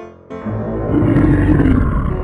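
A loud Godzilla roar sound effect starting about half a second in and lasting about a second and a half, over piano background music.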